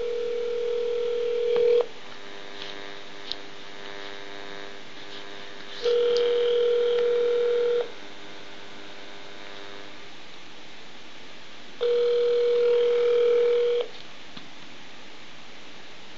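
Telephone ringback tone heard on an outgoing call: a steady two-second tone repeating three times, with about four seconds of quiet between rings. Nobody answers.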